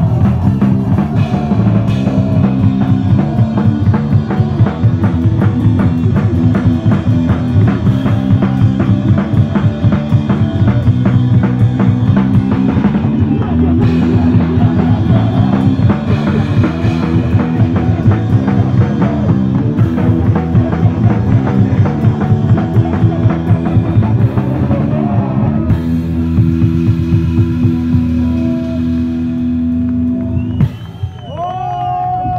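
Punk rock band playing live: rapid drumming on a drum kit with cymbals under distorted electric guitar. About 26 seconds in the drumming stops and a held guitar chord rings on, ending the song.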